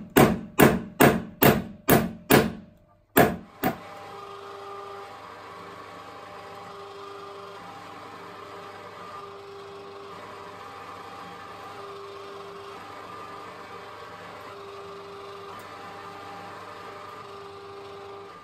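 Hammer blows on a 22k gold bar lying on a steel block, about eight sharp ringing strikes at two to three a second in the first few seconds. Then a jeweller's rolling mill runs with a steady hum and a whine that comes and goes.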